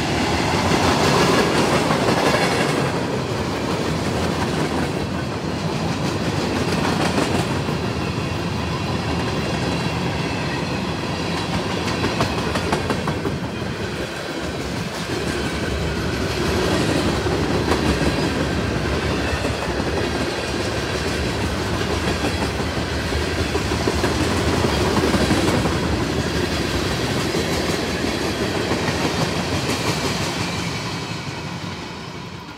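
Freight cars of a long mixed train (boxcars and tank cars) rolling past close by: a steady loud rumble and clatter of steel wheels on the rails.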